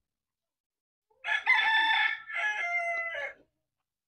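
A rooster crowing once, about a second in: one call of roughly two seconds, held on a high pitch and then stepping down to a lower one for its second half.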